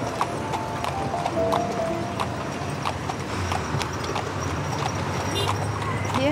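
A carriage horse's hooves clip-clopping on a paved street, with background music carrying a melody, its held notes clearest in the first couple of seconds.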